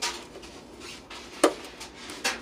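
Front-panel push-button channel selectors on a Pyle Home 160-watt stereo power amplifier being pressed in: a sharp click right at the start and a louder click about a second and a half in, with light handling rustle between them.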